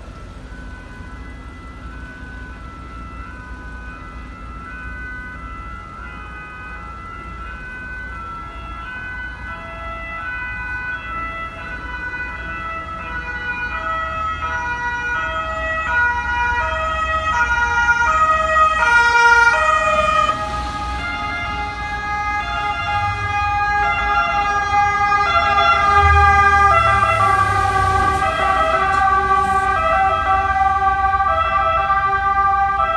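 Two-tone emergency vehicle sirens alternating between two pitches, growing steadily louder as they approach. In the second half more than one siren overlaps, with a low vehicle rumble underneath.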